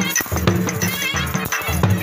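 Loud live folk music for a dancing horse: a drum keeps a steady beat under a reedy wind instrument playing a wavering melody.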